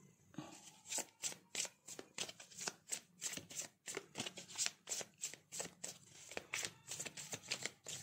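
A deck of tarot cards being shuffled by hand: a steady run of quick, soft card slaps and rustles, about three to four a second.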